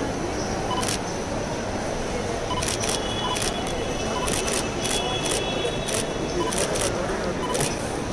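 Camera shutters clicking in quick bursts, several cameras at once, with short high beeps among them, over a steady background of people talking.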